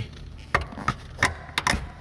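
Handling of a car's rear seat and its metal hook bracket: a series of about five sharp clicks and knocks, spaced roughly a third of a second apart.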